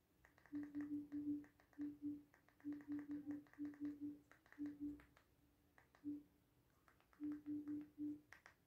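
Android TV interface navigation sounds: a faint string of short, identical low blips, one for each step as the remote moves the focus through a settings list. They come in quick runs of several a second.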